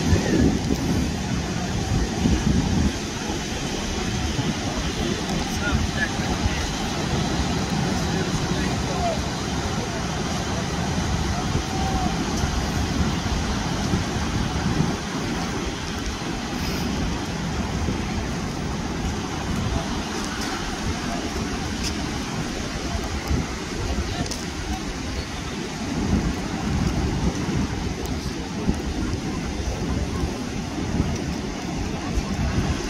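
Surf breaking on the shore, a steady rush of waves, with wind buffeting the microphone and faint voices of people on the beach.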